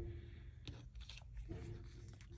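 Quiet hand handling of a small piece of paper and mesh netting: faint soft rustles with a light click a little under a second in.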